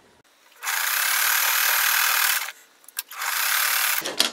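Electric sewing machine running as it stitches a seam through pieced fabric scraps: a steady run of about two seconds, a short stop, then it runs again.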